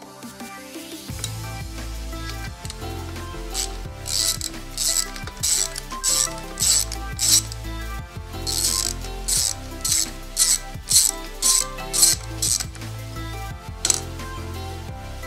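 Ratchet wrench clicking on its back-strokes, about two strokes a second in two runs with a short break between, as the rear brake caliper's mounting bolts are undone. Background music plays throughout.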